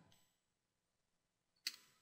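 Near silence with a single computer-keyboard keystroke click near the end.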